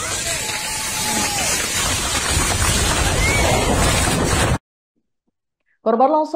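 A loud, steady rushing noise on a phone microphone, with a few distant shouted voices in it; it cuts off abruptly about four and a half seconds in, followed by a second of silence.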